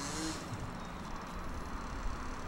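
Wind buffeting the microphone outdoors, an uneven low rumble, with a voice trailing off at the very start.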